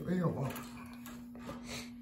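A few light clicks and knocks from hand work on parts under a car, over a steady low hum. A man's voice is heard briefly at the start.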